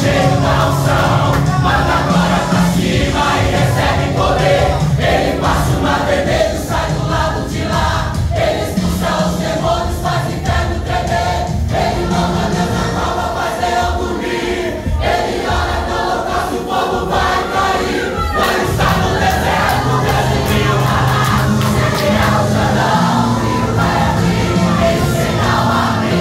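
Congregation singing a worship song together with instrumental accompaniment, many voices at once.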